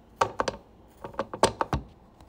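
Handling noise close to the microphone: a quick string of sharp taps and knocks, about ten in two bursts, as things are picked up and set down near the phone.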